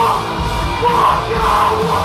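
A live hardcore punk band playing loudly: distorted electric guitars and drums under a yelled lead vocal.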